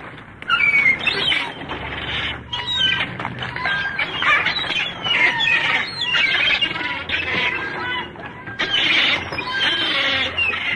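Birds chirping and singing, a busy mix of short, quick rising and falling whistles, over a faint low hum.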